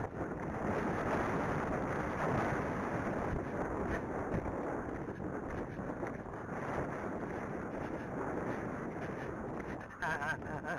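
Wind buffeting the microphone as the horse moves at speed, a steady rushing rumble, with the horse's movement mixed in underneath.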